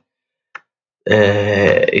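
A man's voice: after a silent first half with one faint click, a drawn-out hesitation sound, a held 'aah', starts about halfway through and runs straight into speech.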